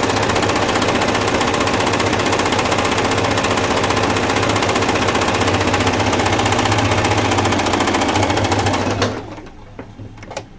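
Singer 8280 electric sewing machine running fast and steady, stitching a decorative pattern stitch through fabric. It stops abruptly about nine seconds in.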